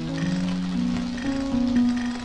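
Live-coded electronic music from TidalCycles: sustained low synthesized tones that step from pitch to pitch every few tenths of a second, with faint ticking higher up.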